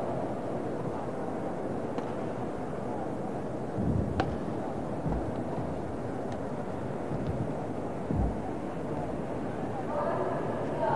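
Badminton rally in an indoor arena: a few sharp racket-on-shuttlecock hits, roughly two seconds apart, over a steady hall murmur. A few low thuds, most likely the players' footwork on the court, come in between.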